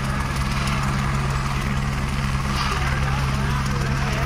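A steady, low engine drone with a constant hum and a fast low pulsing beneath it, with crowd voices chattering over it.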